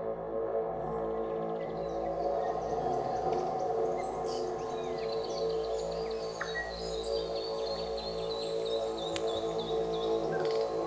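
Ambient meditation music: a steady drone of layered held tones. From about four seconds in, birdsong from a nature recording joins it as a run of quick high chirps.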